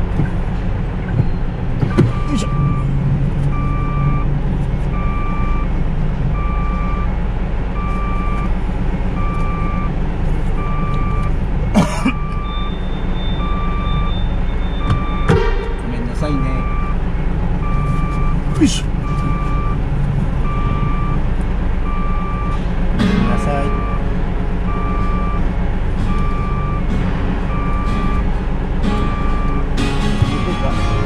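Truck's reversing alarm beeping about once a second, starting about two seconds in, over the steady rumble of the truck's diesel engine heard from inside the cab, with a few sharp knocks.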